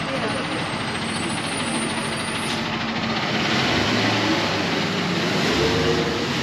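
City street traffic noise with a truck's engine running; its low engine note grows louder in the second half.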